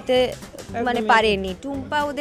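Only speech: a woman talking into the interviewer's microphone.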